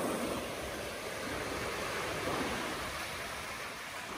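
Small sea waves breaking and washing over shallow water at a sandy shore: a steady rushing wash that swells and eases.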